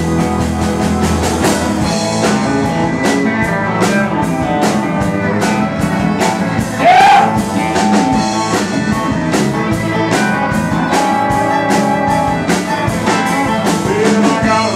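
Live honky-tonk country band playing an instrumental intro: electric and acoustic guitars, fiddle and drum kit keeping a steady beat. About halfway through, a short, loud rising glide cuts through the band.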